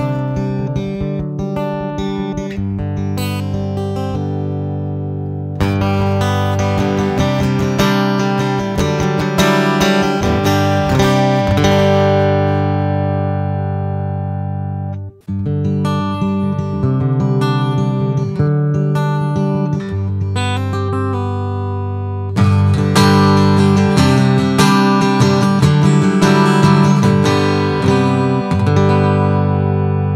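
PRS SE Hollowbody II Piezo guitar played through its piezo bridge pickup: strummed and picked chords. For the first half it is the raw piezo signal with a little reverb. After a brief break about halfway, a custom impulse response matched to an acoustic guitar is switched on, making it sound more like a mic'd acoustic guitar.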